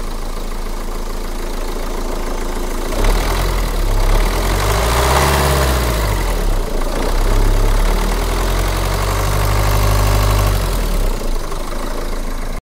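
Renault Scenic II 1.9 dCi four-cylinder turbodiesel idling, then revved: the engine speed rises and falls about three to six seconds in, is held up again for several seconds, and drops back to idle near the end. The repaired intercooler pipe gives no hiss of escaping air.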